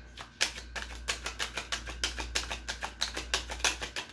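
A rapid, even series of light clicks or taps, about eight a second, starting about half a second in.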